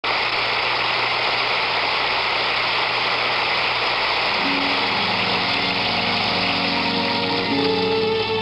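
Steady hiss with a low hum, the noise of an old analog video tape recording. About halfway in, an orchestra fades in with held string notes, the introduction to a song.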